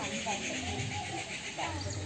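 Indistinct background chatter of several women and children talking at once, with no clear words, over a steady low hum.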